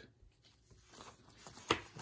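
Faint handling of a sealed plastic coin holder, then one sharp click near the end as it is set down on the desk.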